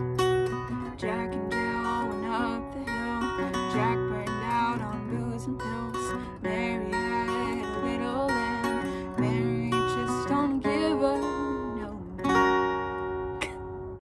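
Acoustic guitar playing closing chords, changing every second or two. It ends on a last strummed chord, struck about twelve seconds in, that rings and fades away.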